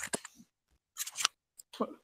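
Short, faint bursts of voices and small noises in a room, broken by stretches of dead silence where the recording cuts out.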